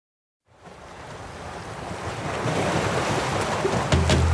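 Ocean surf washing on a beach, fading in from silence about half a second in and growing steadily louder.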